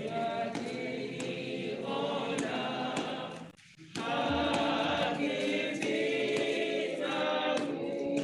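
A group of voices singing a church hymn unaccompanied, many voices together. The singing breaks off for a moment about three and a half seconds in, then carries on.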